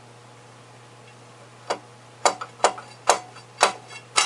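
Five sharp metallic knocks about half a second apart, beginning a little before halfway: a rod being rammed through a South Bend lathe's headstock spindle to drive out a tapered lap stuck fast in the MT3 spindle taper.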